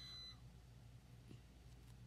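Near silence: faint steady room hum, with a short high beep right at the start.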